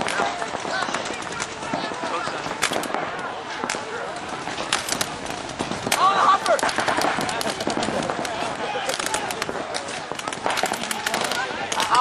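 Pump paintball markers firing across the field in scattered pops and quick strings of shots, thicker near the end, with players shouting about halfway through.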